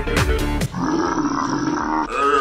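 Edited music with a few sharp hits whose low pitch drops. From a little under a second in, a long, rough, grunt-like noise holds until near the end.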